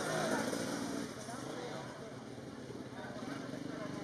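Indistinct voices talking over the steady running of off-road motorcycle engines, louder in the first second.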